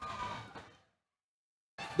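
Faint arena background noise that cuts out after about half a second, leaving dead silence for over a second.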